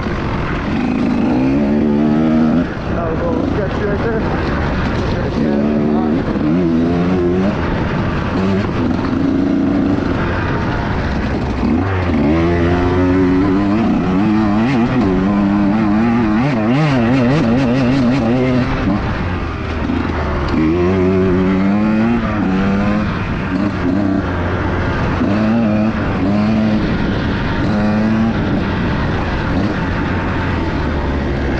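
Two-stroke enduro dirt bike ridden hard on a trail, its engine repeatedly revving up and dropping back as the rider works the throttle.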